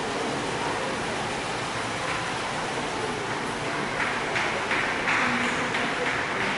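Steady, even background noise of a large indoor hall, getting a little louder about four seconds in.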